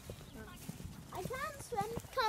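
Footsteps on stone paving, short scuffing knocks, with a child's high voice chattering in the second half.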